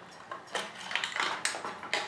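Small clicks and clatters of a Genie garage door opener's motor drive board and its plug connectors being worked out of the opener's metal housing, starting about half a second in.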